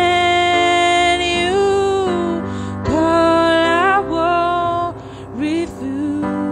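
A woman singing a slow worship song in long held notes that glide between pitches, over sustained chords on an electric keyboard. The phrases break off briefly just before the third second and again near the fifth.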